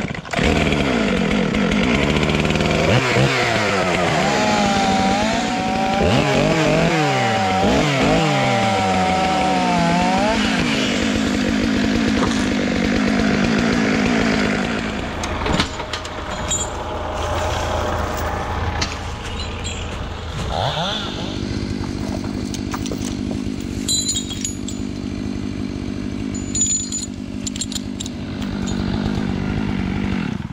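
Stihl MS 500i chainsaw running hard, its pitch rising and falling as it is revved through the first half. About halfway through it drops to a quieter, steadier, lower-pitched run until it stops right at the end.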